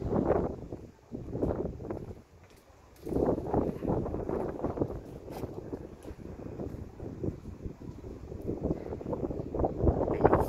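Wind buffeting the phone's microphone in uneven gusts, with a brief lull a couple of seconds in.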